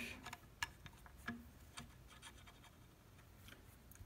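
A few faint, short clicks and light scratches of a steel toggle link being handled and set into a lever-action rifle's brass frame, mostly in the first two seconds.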